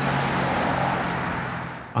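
Road traffic on a busy multi-lane road: the tyre and engine noise of passing vehicles swells at the start and fades away toward the end.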